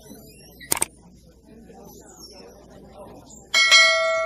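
A sharp double click sound effect, then near the end a bright bell chime of several ringing tones that fades over about a second, from a subscribe-button animation. Faint shopper chatter runs underneath.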